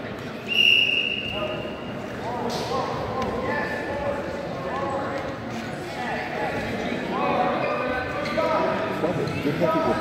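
A single whistle blast, steady and high, lasting about a second and a half and starting about half a second in. It is followed by voices and shouts echoing in a gym.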